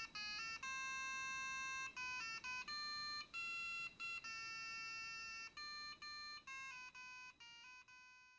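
A simple electronic melody of buzzy square-wave beeps in the style of an 8-bit computer tune, notes changing pitch every fraction of a second to about a second, slowly fading out toward the end.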